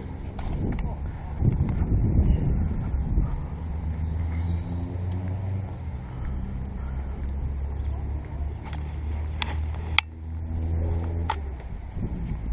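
A steady low mechanical hum, like an engine running, with a noisy rush about two seconds in and a few sharp clicks near the end.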